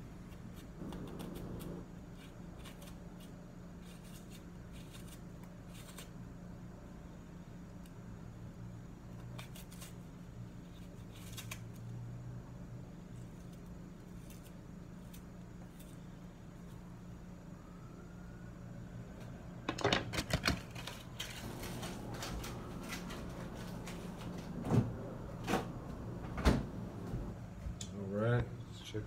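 Kitchen knife cutting a raw onion held in the hand: faint small cuts and clicks over a steady low hum, with a few louder clicks and knocks in the last third.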